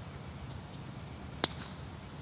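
A golf driver striking a ball off the tee: one sharp crack with a brief ring about a second and a half in, over faint steady background noise.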